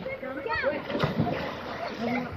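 A boy jumping from a rock into a deep pool: a sharp splash of his body hitting the water about a second in. Children are shouting around it.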